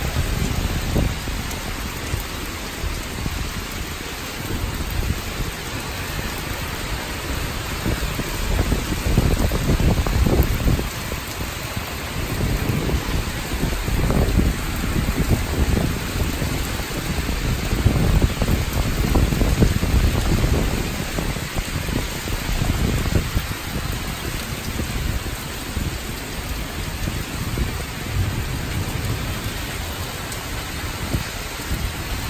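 Heavy downburst thunderstorm rain pouring steadily, with strong wind gusts. The low rush swells and falls several times and is loudest about two-thirds of the way through.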